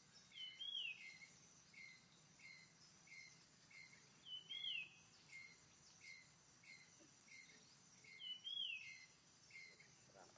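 Faint forest ambience: a bird repeats a short note about twice a second and gives a longer rising-then-falling call three times, about four seconds apart, over a thin, steady, high insect drone.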